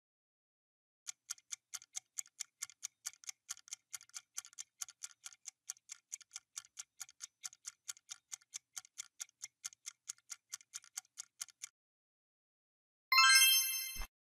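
Clock-style countdown ticking sound effect, about four sharp ticks a second, which stops a little before the end. About a second later a short, bright, loud chime sounds as the correct answer is revealed.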